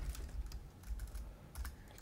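A few faint keystrokes on a computer keyboard, typed slowly and unevenly.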